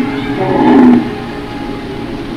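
A dinosaur roar sound effect, loud and about half a second long, a little before the middle, over background music that carries on steadily after it.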